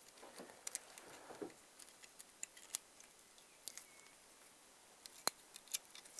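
Faint small metal clicks and scrapes as the steel anti-squeal shim clip is worked into a motorcycle brake caliper body by hand, with one sharper click about five seconds in.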